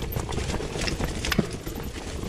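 Mountain bike rolling fast over a rocky trail: tyres crunching on loose stones, with irregular clacks and knocks from the bike rattling over the rocks, the sharpest a little past halfway, over a steady low rumble.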